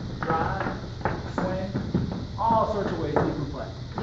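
Dance shoes tapping and sliding on a hard ballroom floor in quick, irregular steps during Balboa footwork, with a person's voice over them.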